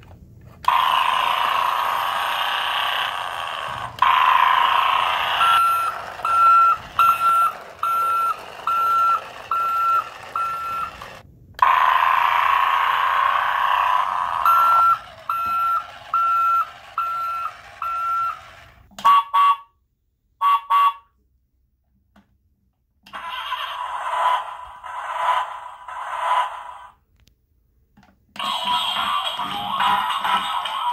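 A battery toy truck's electronic sound effects played through its small speaker. A buzzy engine-like noise runs with a beeping tone about once a second, in two runs of several beeps. Short bursts follow, then a brief silence, and the built-in song starts near the end.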